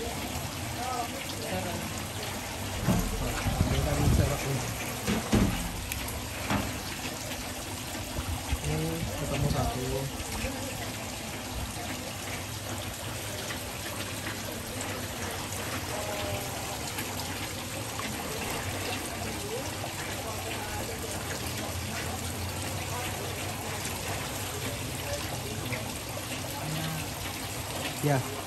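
Water trickling steadily into a crayfish pond, with louder splashing about three to six seconds in as a hand net is worked through the water to catch a crayfish.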